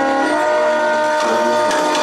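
Brass fanfare band of trumpets, trombones and sousaphones holding a loud sustained chord. The chord moves to new notes just after the start, and a few percussion hits come in during the second half.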